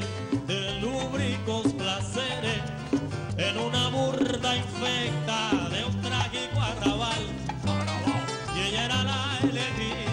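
Cuban son band playing, with plucked strings over a bass line that moves in steps.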